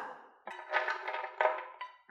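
Toasted pine nuts and almonds tipped from a frying pan, clattering into a blender jar in a few short knocks, over light background music.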